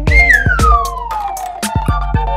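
A cartoon sound effect: one long whistle-like tone sliding smoothly down in pitch over about a second and a half. It plays over upbeat children's background music with a steady beat.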